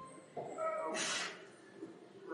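A short, high, strained vocal sound, like a whine, from a person straining at a heavy press, ending in a brief hissing breath about a second in.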